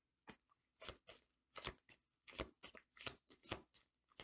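A deck of oracle cards being shuffled from hand to hand: faint, irregular soft slaps and riffles of card against card, about three a second.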